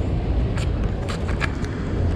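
Steady low rumble of outdoor city background noise, with a few short faint clicks.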